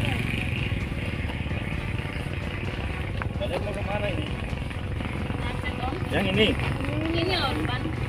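Low, indistinct talking over a steady low rumble of a vehicle engine running.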